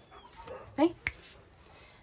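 Small dog giving a faint, short, high whimper, with a single sharp click about a second in.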